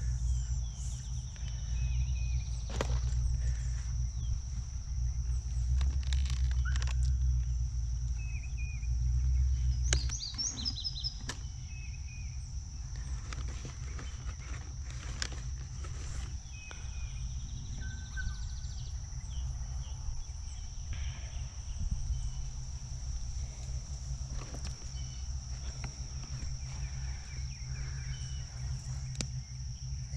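Steady high-pitched insect drone, one unbroken tone, with a few short bird chirps. Under it runs a low rumble, heavier in the first third, with scattered clicks.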